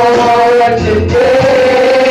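Gospel singing: a woman's voice sings long held notes into a microphone over a church band with drums.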